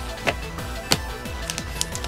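Background music with a repeating low pulse, and two sharp taps as cards are handled, about a quarter of a second and about a second in.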